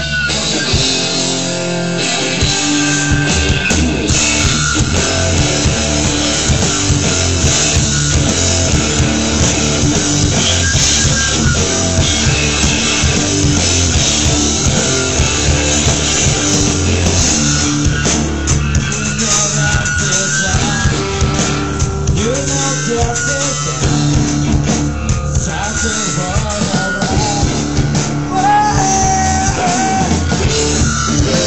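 Live rock band playing loud and without a break: electric guitar, bass guitar and drum kit.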